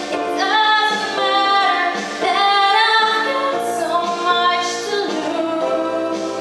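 A female solo voice singing a pop song into a handheld microphone, over a pre-recorded instrumental backing track. She holds and bends long notes.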